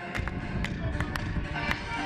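Music with a steady beat, and spectators clapping along in time: sharp claps about four a second.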